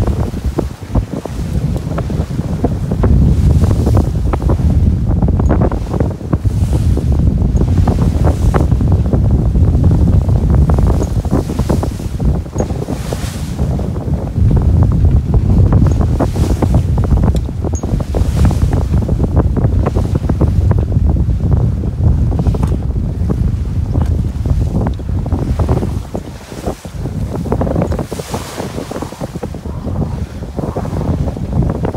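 Strong wind buffeting the microphone on the deck of a sailboat under way, a heavy fluctuating rumble, with waves rushing along the hull in swells of hiss every couple of seconds.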